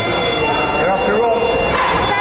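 Ringside shouting in an echoing hall: several raised voices overlap, with short high yelp-like calls through the middle.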